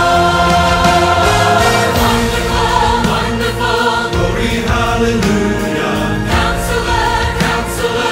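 Choir singing with orchestral accompaniment: a long held chord that breaks into shorter, accented notes about two seconds in.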